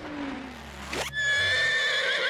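A horse whinnying: a breathy blow first, then a long, high, wavering neigh from about a second in.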